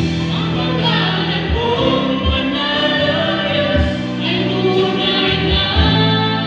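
A woman and a man singing a Tagalog Christian worship song together through microphones, held notes in harmony, with short deep bass notes sounding beneath the voices.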